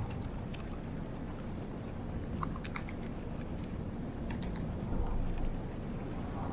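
Steady low rumble of the Mesabi Miner, a 1,000-foot Great Lakes ore freighter, moving through an ice-choked canal. A few brief cracks and crunches of broken ice against its hull come around the middle.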